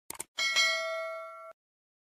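Subscribe-button sound effect: two quick mouse clicks, then a bright bell ding that rings on for about a second and cuts off suddenly.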